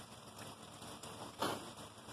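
Faint steady outdoor noise with no clear tone, broken by one short sharp click about a second and a half in.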